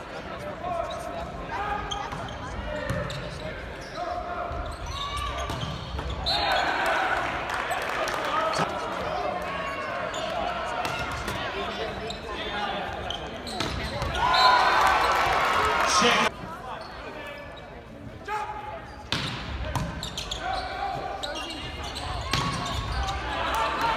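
Indoor volleyball match ambience in a large gym: spectators talking and calling out, with sharp smacks of the ball being served, passed and spiked. About two-thirds of the way in the voices swell louder, then stop abruptly.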